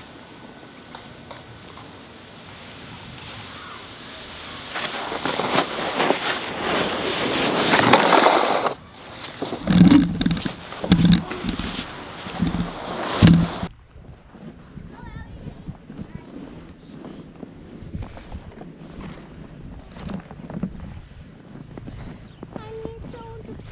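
A plastic sled sliding down a packed snow track, its hiss growing louder as it nears and stopping sharply about nine seconds in. Then four short, loud, low-pitched bursts follow one after another, and the sound drops off suddenly after about fourteen seconds.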